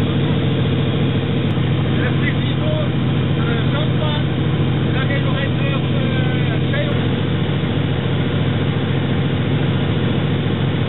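Antonov An-2's nine-cylinder radial engine running steadily in flight, heard from inside the cabin as a loud, even drone. Faint voices can be heard under it from about two to seven seconds in.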